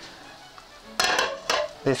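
A metal utensil clinking sharply against a frying pan about three times, starting about a second in, as fried parsnips are served from the pan and it is set back on the gas hob.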